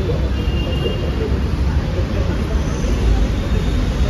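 Steady low rumble of road traffic with faint distant chatter.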